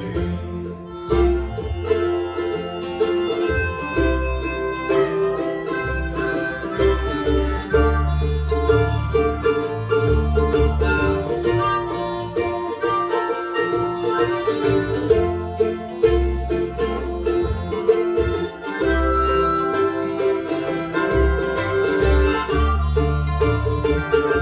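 Acoustic bluegrass instrumental break on mandolin, acoustic guitar and upright bass, with a harmonica playing held notes over the picking.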